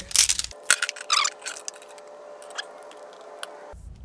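Segmented metal frame poles of a collapsible Lastolite reflector clicking and clattering as they are handled and fitted together, loudest in the first second or so. After that there is only a faint steady hum and a few light clicks.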